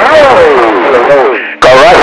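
Men's voices talking over CB radio, loud, distorted and hard to make out. About a second and a half in, one transmission fades out and another comes in suddenly at full level.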